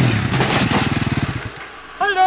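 Sport quad (ATV) engine running with a fast, even pulse that fades away over the second half.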